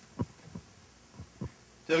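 A few short, soft thumps and knocks, four in under two seconds with the first the loudest: handling noise from a handheld microphone being picked up, over low room hum.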